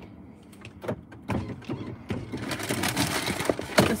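Paper takeout bag rustling and crinkling as it is handled and opened. The sound starts about a second in and grows denser and louder toward the end, with many small crackles.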